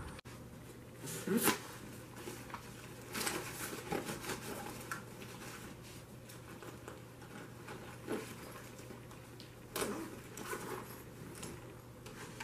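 Faint handling noises in a small room: scattered rustles and light knocks a few seconds apart, over a low steady hum.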